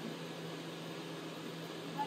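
Steady hum and airy hiss of running treatment-room equipment, a machine fan or blower, with a low constant hum tone underneath.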